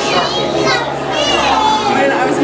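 Children talking and calling out over general crowd chatter, with no clear words.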